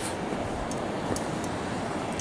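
Steady rush of a shallow, rocky river running between snow and ice along its banks, with a few faint ticks.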